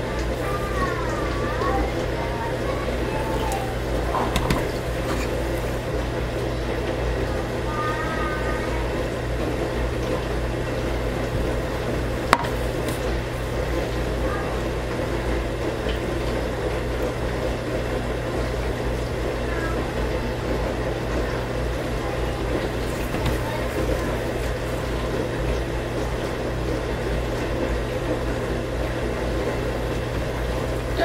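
A steady background hum runs throughout, with faint voice-like sounds in the first ten seconds and a single sharp click about twelve seconds in.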